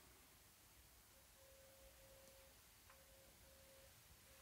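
Near silence: room tone, with a faint thin steady tone that breaks off and comes back a few times.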